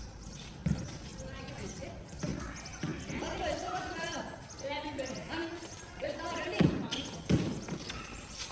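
A basketball bouncing on a hard outdoor court: a few separate thuds, the loudest near the end. Players' voices call out in the middle.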